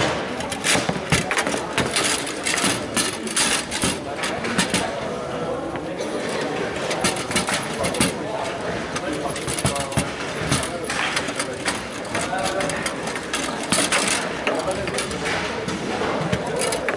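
Table football in play: the hard ball struck by the plastic men and knocking off the walls, with the rods clattering, many sharp clicks and knocks in irregular bursts over a murmur of voices in the hall.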